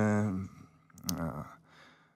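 A man's voice trailing off at the end of a word, then a breath and a short sigh-like voiced sound in the pause before he carries on speaking.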